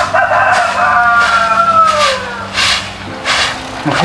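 A rooster crowing once: a long call that falls in pitch as it fades about two seconds in. A straw broom sweeps a dirt yard, with its strokes heard again near the end.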